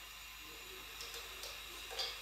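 Faint steady hiss of a lit gas stove burner, with a few light ticks about a second in.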